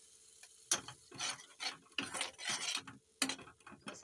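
A metal spoon stirring and scraping spice masala with tomato purée around a non-stick kadhai as it fries. After a short quiet start come a run of scraping strokes with sharp clinks of spoon on pan, one about a second in and one near the end.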